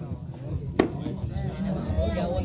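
Men's voices talking in the background, with one sharp hit a little under a second in.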